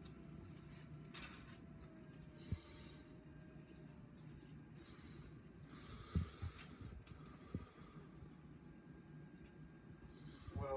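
Faint room noise with a steady low hum, broken by a few soft knocks and brief breath-like rustles.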